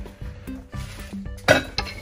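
Glass items clinking against each other, with one sharp clink about one and a half seconds in that rings briefly, then a lighter one, over soft background music.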